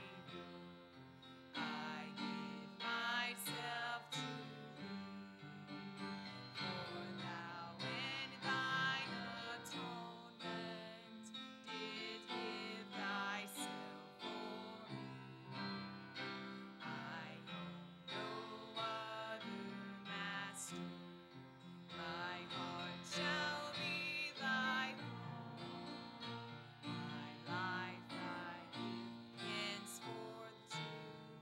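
A hymn sung by a woman's voice with instrumental accompaniment.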